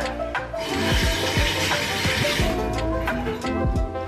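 Tap water running into a bathroom sink for about two seconds, starting about half a second in, as a stick is rinsed under it. Background music with a steady beat plays throughout.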